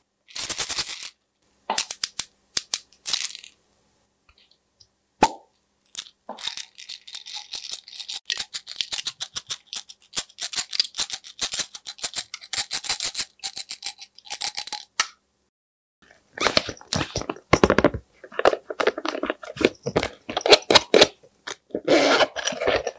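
A small glass vial of tiny beads shaken and tipped out, the beads rattling against the glass in dense, high clicking bursts and scattering onto slime. About 16 seconds in, this gives way to lower, squelchier pressing and handling sounds.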